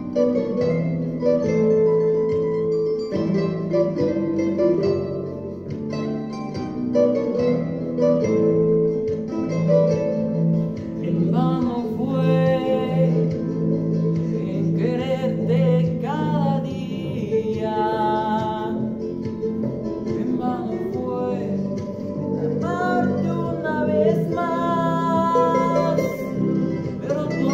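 Plucked-string accompaniment, guitar-like, playing a song's introduction. About halfway in, a young male voice begins singing over it with vibrato.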